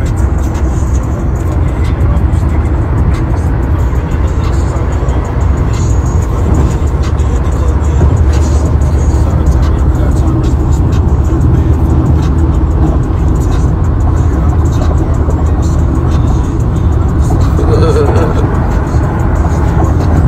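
Rap music playing loudly on a car stereo, heavy in the bass, with a rapped vocal in the track. Beneath it is the steady rumble of the car, heard from inside the cabin.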